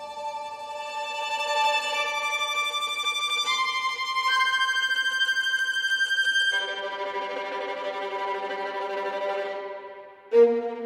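Sampled solo violin playing tremolo: bowed notes held a couple of seconds each, stepping up in pitch several times, then dropping to a lower note about six and a half seconds in.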